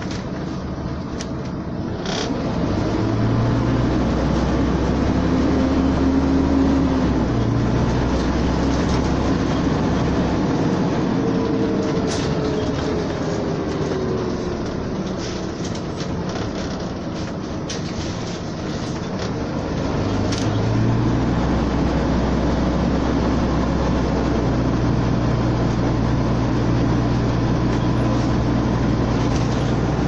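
Scania N94UD double-decker bus engine and drivetrain heard from inside the passenger saloon while the bus is on the move. The engine note rises and swells twice, about two seconds in and again about twenty seconds in, as the bus pulls away and accelerates. In a quieter stretch between the two, a whine falls in pitch as the bus slows.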